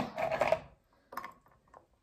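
Ice cubes dropped into a glass of water, a few short clinks about a second in and a faint tick near the end.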